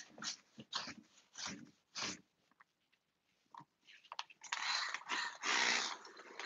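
A few short paintbrush strokes brushing over a painted wooden wardrobe door, then, after a pause, a hand-pump spray bottle misting water onto the paint in several quick hisses near the end.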